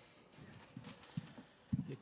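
A quiet pause in a large room's background noise, with a few soft, faint knocks spread through it and a slightly louder one near the end.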